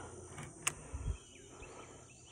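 Quiet outdoor background with a single sharp click about two-thirds of a second in and a soft low thump just after a second, with faint bird chirps.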